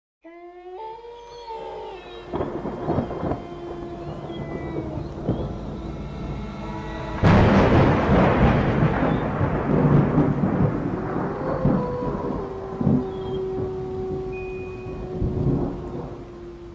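Thunderstorm sound effect: rain with held, eerie tones, and a loud thunderclap about seven seconds in that rolls on and slowly dies away.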